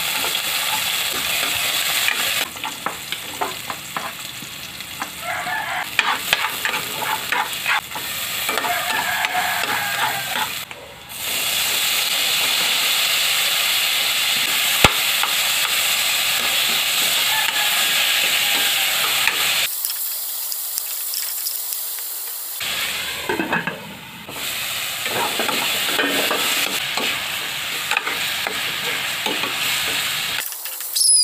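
Onions and tomatoes sizzling in hot oil in an aluminium pan, stirred with a metal ladle that scrapes and clinks against the pan. The sizzle changes abruptly a few times.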